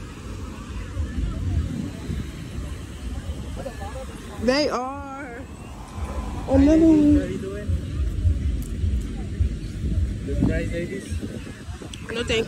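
Scattered voices of people calling and talking nearby, one rising call about four seconds in and another a few seconds later, over a steady low rumble of wind on the microphone.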